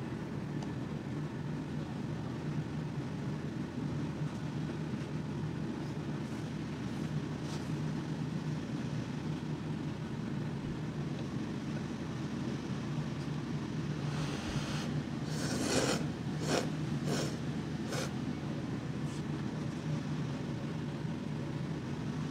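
Steady low background hum with a cluster of short sharp slurps from about two-thirds of the way in: a diner slurping thin champon noodles from the bowl.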